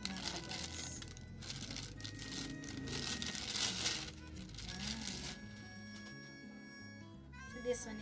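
Thin plastic bag crinkling and rustling as a pop filter is pulled out of it, in dense bursts that stop about five seconds in, over background music.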